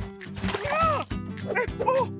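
An animated character's short, arching yelps of alarm, twice, over background music.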